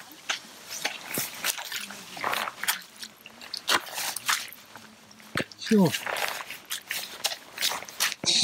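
Footsteps in gumboots squelching through swampy mud and wet moss, an irregular run of wet steps.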